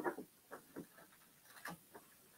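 Faint rubbing and short scrapes of books being slid and handled on a bookshelf, a few separate brushes spread across the couple of seconds.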